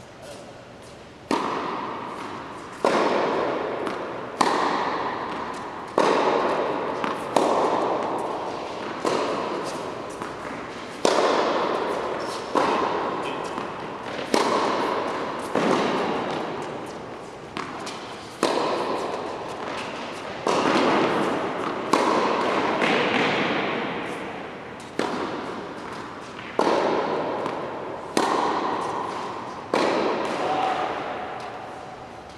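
Tennis balls struck by rackets and bouncing on an indoor court, a sharp pop about every second and a half, each one echoing through the large hall.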